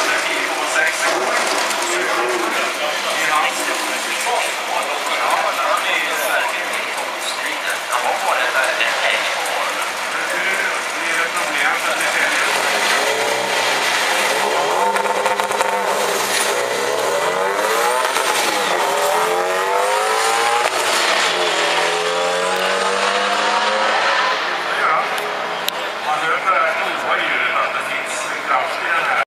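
Volkswagen Beetle drag cars' engines revving at the start line, then accelerating hard down the strip. The engine pitch rises and drops back several times as it shifts up through the gears.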